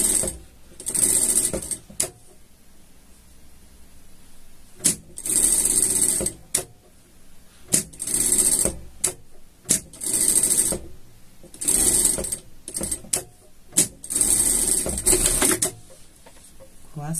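Industrial straight-stitch sewing machine stitching in short runs of about a second each, stopping and starting around seven times, with single sharp clicks in the pauses between runs. It is sewing through three layers of fabric and batting at once.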